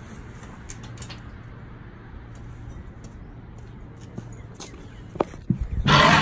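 Outdoor ambience with a steady low hum and a few faint clicks. Near the end come a couple of sharp knocks and a loud rustle of clothing rubbing against the phone's microphone as it is moved.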